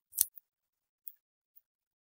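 A single sharp computer-mouse click about a quarter second in, followed by a few much fainter ticks; otherwise near silence.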